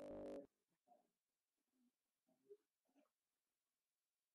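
Near silence on an online call, with a brief faint hum of a voice right at the start and a few very faint murmured fragments after it.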